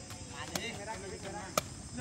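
Two sharp hits of a sepak takraw ball being kicked, about a second apart, the second louder.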